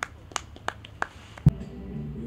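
Microphone being handled: several sharp clicks, then a loud thump about one and a half seconds in. A low voice begins to hum near the end.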